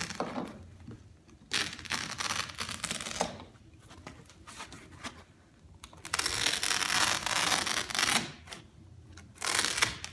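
Carpet knife slicing through the woven backing of a carpet in several long strokes, each lasting one to two seconds, with short pauses between them.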